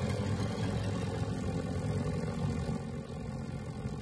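Propeller-driven biplane engines droning steadily, a little quieter near the end.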